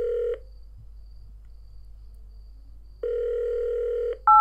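Telephone ringback tone: a steady low tone about a second long that stops just after the start and sounds again about three seconds in. It is the ringing a caller hears while the other phone rings.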